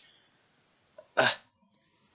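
Near silence, then a single short hesitant "uh" from a man's voice a little over a second in.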